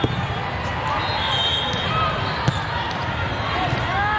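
Volleyball hall din: a steady babble of many voices across the courts, with a few sharp volleyball bounces and short sneaker squeaks on the court floor.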